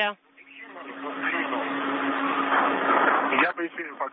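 Radio-channel hiss with a steady low hum on the spacewalk communications loop. It swells over the first second, holds, and cuts off about three and a half seconds in, when voices return.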